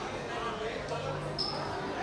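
Indistinct voices of several people talking over one another, with a brief high beep about one and a half seconds in.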